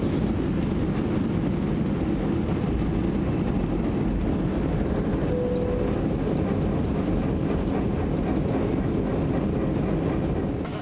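Jet airliner cabin noise heard from inside the cabin: the engines and rushing air make a steady, even rumble, heaviest in the low end. A brief faint tone sounds about five seconds in.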